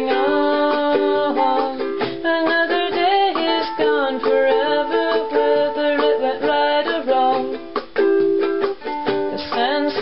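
Ukulele music: an instrumental passage of the song, with no singing.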